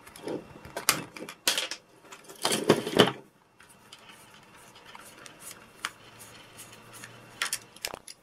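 Hard plastic clicks and knocks as a toy robot's plastic gearbox housing is handled and worked with a screwdriver, several sharp ones in the first three seconds, then only faint handling noise.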